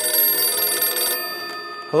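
Telephone bell ringing with a rapid shimmer. The ring stops a little over a second in, and its tone fades away.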